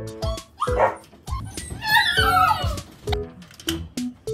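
A Border collie whining: a short cry about half a second in, then a louder run of high, wavering whimpers around two seconds in. Background music with a steady beat plays under it.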